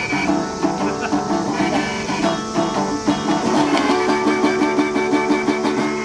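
A metal-bodied resonator guitar played in a steady, even rhythm, together with a harmonica on a neck rack that holds long notes over it from about four seconds in.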